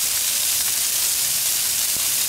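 Brussels sprouts and broccoli sizzling on a hot flat-top griddle, a steady even hiss.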